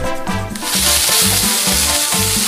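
Chicken pieces sizzling as they fry in a nonstick frying pan, starting about half a second in, over background music with a steady beat.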